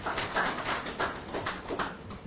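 A pause in a man's speech at a press conference: room noise with a few scattered soft clicks and rustles.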